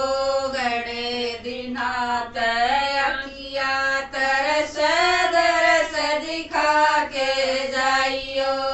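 Women singing a Haryanvi devotional bhajan, held melodic notes that bend in pitch, with brief breaks between phrases.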